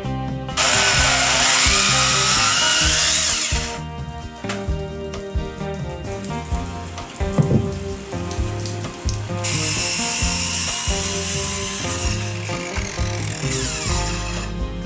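Handheld Rockwell circular saw cutting into wooden timber twice: one cut of about three seconds starting half a second in, its whine rising in pitch, and a second of about four seconds starting a little over nine seconds in. Background music plays underneath.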